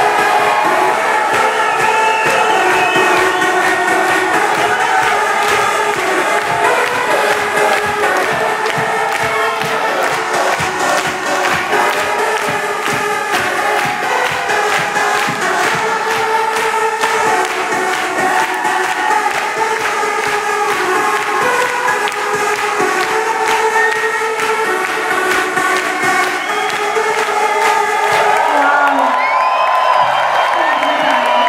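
Live techno-pop song played loud through a club PA with a steady fast beat and held synth lines, an audience cheering over it.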